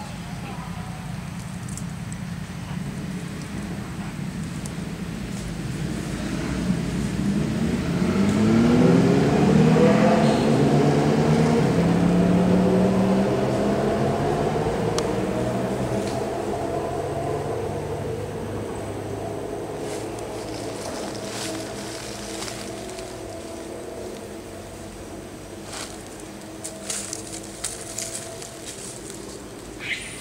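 A motor vehicle engine passes by. Its pitch rises over a few seconds, it is loudest about ten seconds in, and then it holds a steady note as it slowly fades. A few sharp clicks come near the end.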